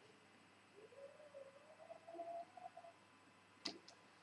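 Near silence with the faint sound of a long drag on a Genesis-style e-cigarette: a drawn-out tone rising slowly in pitch for about two seconds, then a single sharp click near the end.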